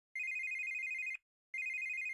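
Telephone ringing: two trilling rings, each about a second long, with a short gap between them.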